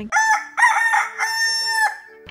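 Rooster crowing once, a cock-a-doodle-doo that ends on a long held note and cuts off sharply just before the end.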